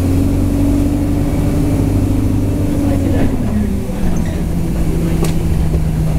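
Bus engine and drivetrain heard from inside the passenger cabin while driving, a steady droning note that drops to a lower pitch about three and a half seconds in. A sharp click near the end.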